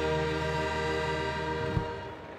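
Symphony orchestra holding a sustained final chord over a deep low note, cut off by one short sharp stroke near the end.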